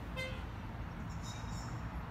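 A New Flyer C40LF natural-gas transit bus idling as a low, steady rumble. A single brief horn chirp sounds just after the start.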